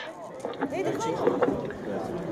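Indistinct voices talking quietly in the background, softer than the race commentary heard on either side.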